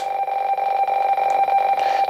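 RTTY radioteletype signal from a shortwave receiver's speaker: two steady tones that switch back and forth very rapidly, sending the RYRY idle pattern, which the operator takes for the station idling.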